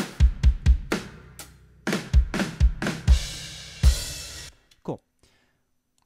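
Multitracked drum kit recording played back: kick drum and snare hits in a groove, with a cymbal wash ringing from about three seconds in. It cuts off suddenly after about four and a half seconds when playback stops.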